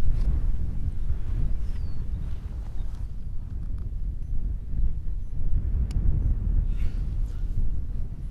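Wind buffeting the microphone, a gusting low rumble. One sharp click sounds about six seconds in.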